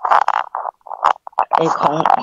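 A woman speaking Thai. Short, muffled murmurs break up her speech in the middle, and she resumes clear speech near the end.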